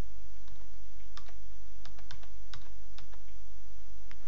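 Computer keys clicking, a handful of separate, irregularly spaced presses as presentation slides are paged through, over a steady low electrical hum.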